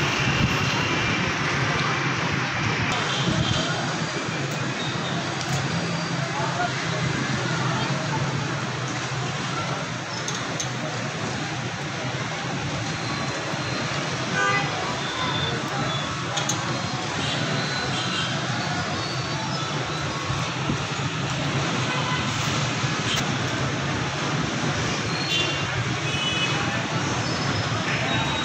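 Steady street traffic noise at a road-rail level crossing, with people's voices in the background and a few short tones that may be vehicle horns.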